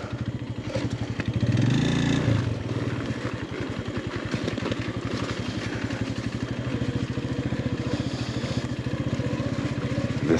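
Motorcycle engine running under way at low speed, its exhaust pulses steady and even, with a brief rise and fall in revs about a second and a half in.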